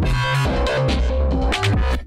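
Electronic dubstep music with a heavy bass line.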